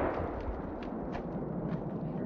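Lingering echo and rumble of a 12-gauge blast from a Panzer BP-12 bullpup shotgun in the woods, fading slowly with a few faint ticks.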